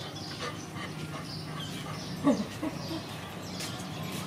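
A dog gives one short, loud vocal call about halfway through, followed quickly by two softer ones.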